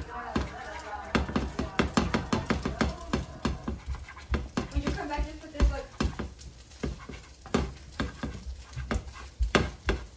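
Spatula knocking and scraping against a frying pan in quick, irregular taps as cooked egg is broken into small pieces.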